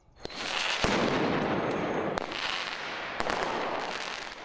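Several sharp explosive bangs, like firecrackers or stun grenades, going off a second or so apart over a steady noisy roar of a street clash between protesters and riot police.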